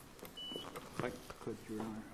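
A low-level pause filled with faint voices and a few small clicks, with one brief high electronic beep about half a second in.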